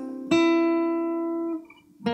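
Capoed acoustic guitar: one strummed chord rings for about a second, then is damped, leaving a short pause before the next strum.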